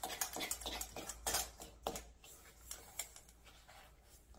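A fork's tines clicking and scraping against a stainless steel mixing bowl as egg is cut into a dry flour-and-sugar crumble. The light clicks come quick and irregular at first, then thin out through the second half.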